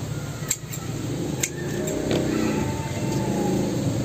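About four sharp clicks of a cutting blade biting into the hard wood of a dug-up bonsai stock's roots, in the first half. In the second half a motor engine hums in the background.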